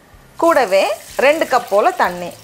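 A person speaking, starting about half a second in after a short quieter moment.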